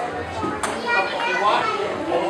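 Children's and adults' voices talking and calling out together in a large room, with a single sharp click about half a second in.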